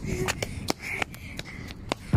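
A run of light, irregular clicks and knocks, about eight in two seconds, from someone moving on a brick path with the filming phone in hand: footsteps on the paving and the phone being jostled.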